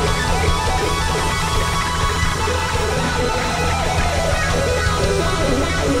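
Live rock band playing, led by an electric guitar over drums and bass.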